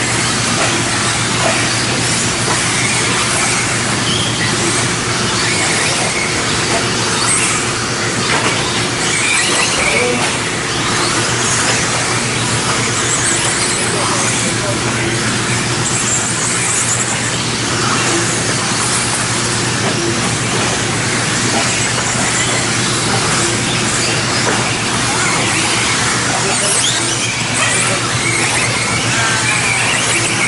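Several electric 1/10-scale 2WD modified-class RC buggies racing: high-pitched motor whine and tyre noise in a steady din, with a steady low hum underneath.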